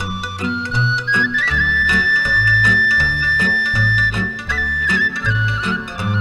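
Instrumental passage of Romanian folk dance music with no singing. A lead melody instrument climbs and holds one long high note for about three seconds, then steps back down, over a bouncing two-note bass and a steady rhythmic accompaniment.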